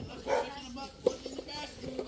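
Faint voices in the background, with a couple of small sharp clicks.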